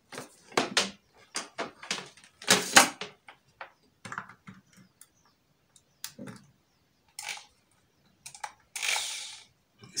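Plastic clicks and knocks of a corded electric drill being handled, bunched in the first three seconds, then two short bursts of noise in the second half.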